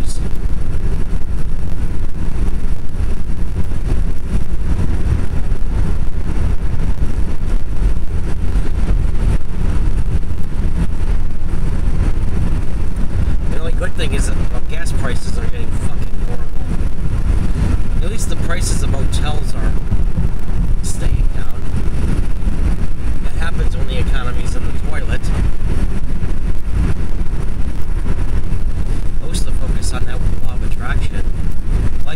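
Steady road and engine noise of a car cruising at highway speed, heard from inside the cabin as a loud, even low rumble, with a few brief faint higher sounds near the middle.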